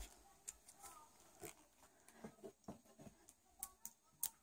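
Near silence, with faint scattered soft ticks and rustles from hands handling a thread-wrapped craft wire.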